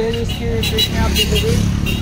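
Voices talking, with a low rumble underneath that grows stronger in the second half.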